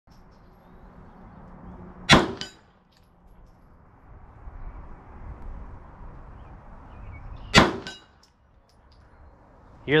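Two gunshots about five and a half seconds apart. Each is followed a fraction of a second later by the faint ping of the bullet hitting a steel target about 50 yards downrange.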